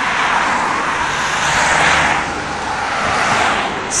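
Road traffic noise: a steady rush of tyre and engine noise with a low hum, swelling near the middle as a vehicle passes.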